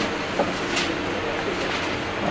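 Steady mechanical running noise with a couple of light metallic clicks as a sliding gear is pushed along the shaft of a sliding-mesh gearbox to engage second gear.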